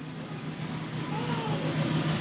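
A pause in speech: a steady low hum over background noise, with a faint wavering sound about a second in.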